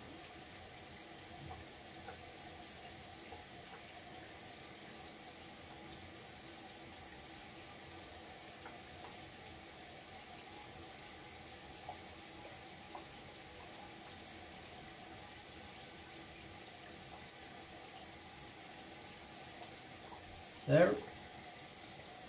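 Bathroom tap running steadily into the sink, faint and even. A short burst of a man's voice comes near the end.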